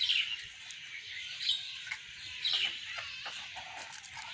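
Small birds chirping, a few short calls spread through the moment, with soft rustling and light clicks of leaves being handled.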